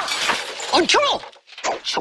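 The loud crash of something breaking and shattering dies away in the first moments. About a second in comes a short vocal cry whose pitch rises and falls.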